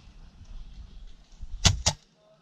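Two airsoft sniper rifle shots in quick succession, about a fifth of a second apart, near the end.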